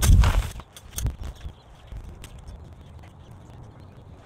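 Garden hoe striking and scraping loose soil: a dull thud and scrape at the start and another hit about a second in, then only faint light clicks.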